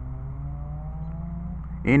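Low, steady rumble of city traffic, with a vehicle engine whose pitch climbs slowly over about two seconds as it accelerates.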